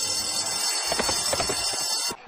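Horse-race starting bell ringing steadily, with a few knocks beneath it about a second in; the ringing cuts off at the end, a cartoon sound effect.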